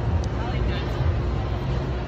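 Street ambience in a busy city: a steady rumble of traffic with indistinct voices of people nearby.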